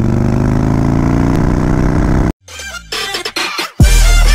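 Harley-Davidson Dyna's V-twin engine pulling as the bike rides along, its pitch rising slowly. It cuts off suddenly a little over two seconds in, followed by falling swooshes and then electronic music.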